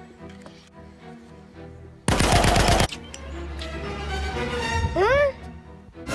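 A burst of rapid automatic gunfire, under a second long, about two seconds in, over background music. After it a rising swell builds and ends in a few quick upward-sweeping chirps.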